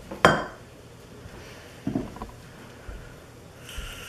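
A metal saucepan and spoon knock against a ceramic baking dish as pot pie filling is scraped out. There is one sharp clank about a quarter second in, then a few softer knocks around two seconds in.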